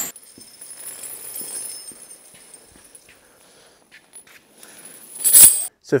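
Steel tire chains handled in a plastic tote: faint scattered clinks of chain link on link, then one loud, brief clatter about five seconds in.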